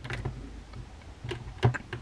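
A few light plastic clicks and taps from a hand working a plastic action figure's head joint, the loudest a little past halfway.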